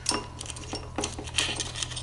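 Light, irregular metallic clicks and clinks of a GY6 scooter engine's steel timing chain against the cam sprocket as the sprocket is worked onto the camshaft by hand.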